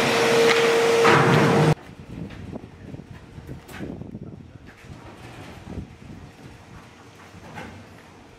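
A loud, steady machine-like noise with a constant hum cuts off abruptly about two seconds in. After it come faint scattered knocks, clicks and scrapes from a heavy coffee roaster being pushed along on a wheeled trolley.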